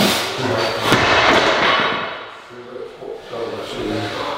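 A loaded axle bar with rubber bumper plates, 300 kg, comes down from a deadlift lockout and thuds onto the lifting platform about a second in.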